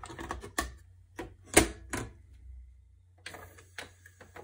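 Plastic clicks and clacks of a cassette being loaded into a Tascam 244 Portastudio's cassette well, with one loud snap about one and a half seconds in, over a low steady hum. Near the end the transport keys clunk down and the running tape's hiss begins.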